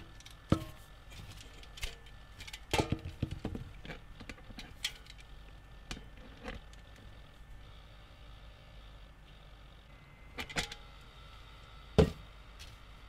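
Scattered clicks and knocks of metal cantennas being handled and fitted onto a bench test jig's connectors, a cluster of them about three seconds in and another near the end.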